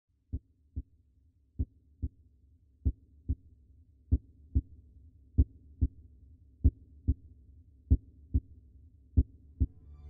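A slow heartbeat, eight double 'lub-dub' beats evenly spaced about a second and a quarter apart, over a low drone that slowly grows louder.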